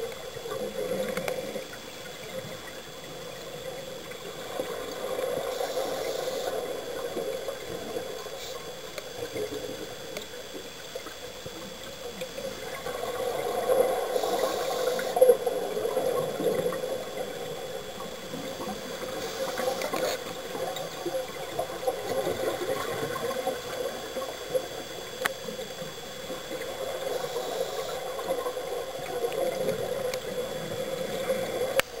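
Scuba diver's breathing heard underwater: regulator hiss and bubbling exhalations, swelling and easing in cycles about every seven seconds.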